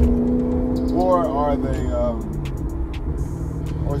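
Maserati GranTurismo engine heard from inside the cabin, running with a steady drone while the car is driven; its pitch drops about two seconds in as the revs fall.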